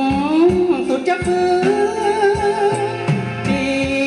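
A male singer sings a slow Thai luk thung song, holding one long wavering note, backed by a live band with accordion, keyboard and drums.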